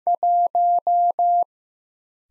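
Morse code sidetone, a pure beep keyed at 15 words per minute, sending the digit one: one dit followed by four dahs (·−−−−).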